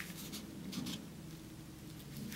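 Faint rustling and brushing of the acrylic-painted paper pages of a handmade book as hands turn and smooth them.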